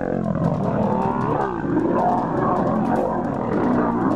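Lions growling and snarling without a break as they fight.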